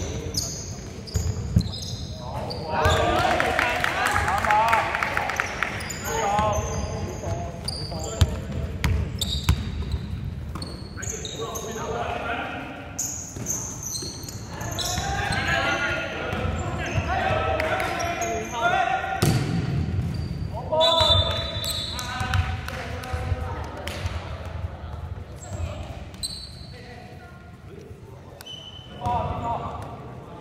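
A basketball bouncing and thudding on a hardwood gym floor during play, with sneakers squeaking and players' voices, echoing in a large sports hall.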